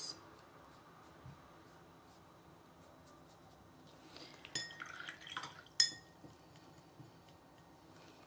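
Glass dropper clinking against a small glass ink bottle as it is put back in and the cap is closed: a few light clinks and taps a little past the middle, the sharpest one near six seconds in, after a stretch of faint room tone.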